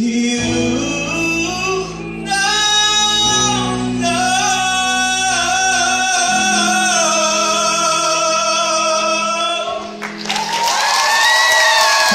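Male voice singing the closing line of a pop ballad over an instrumental backing track, ending on a long held note. About ten seconds in, the music gives way to audience applause and cheering.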